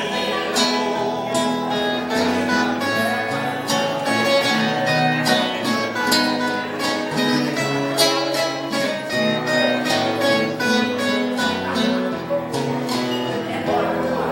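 Instrumental break on acoustic guitars and a viola caipira, several strings picked and strummed together in a steady, lively rhythm.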